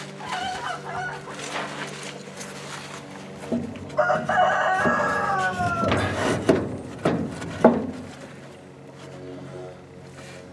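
A rooster crowing once, a long call of about two seconds that falls in pitch at its end, about four seconds in, with shorter clucking calls near the start. A few sharp knocks are heard around it.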